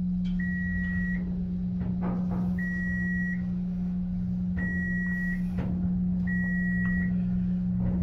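Dover elevator's electronic beeper sounding four identical high beeps, each under a second long and about two seconds apart, over a steady low hum.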